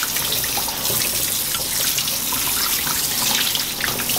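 Kitchen faucet spray running steadily onto blackberries in a stainless steel mesh colander: an even rush of water.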